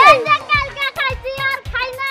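Children's voices chattering excitedly over background music with a steady beat of about two thumps a second.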